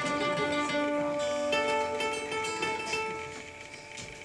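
Acoustic guitar and mandolin strings plucked and left to ring in a short mock 'tuning song', the strings being tuned as they sound: a few held notes, a new pitch coming in about a second and a half in, then everything fading out.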